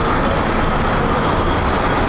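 Steady, fairly loud outdoor background noise: a dense, even rumble and hiss with no single source standing out.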